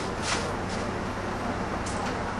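A few faint rustles of plastic being handled and pushed into a metal pot, over a steady low background hum.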